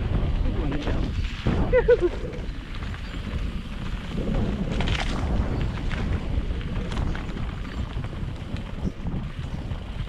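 Mountain bike rolling fast down a dry dirt trail: tyre rumble and rattle over bumps, with wind buffeting the microphone and scattered knocks. A short, wavering pitched sound comes about two seconds in.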